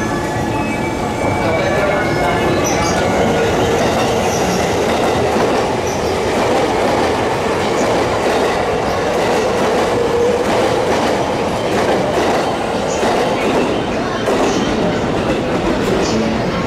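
JR East 651 series electric train running through a station without stopping, its wheels clattering over rail joints in a steady stream of clicks as the cars roll past close by.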